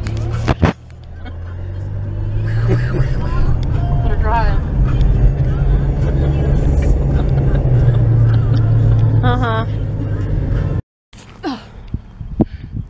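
Car engine and road noise heard inside the cabin while driving, a steady low hum that builds as the car picks up speed and then holds. Brief vocal sounds come twice over it, and the sound cuts off suddenly near the end.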